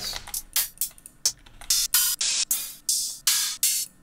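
Hi-hat one-shot samples previewed one after another. Short closed hi-hat ticks come first, then longer, sizzling open hi-hat hits in the second half, about a dozen hits in all.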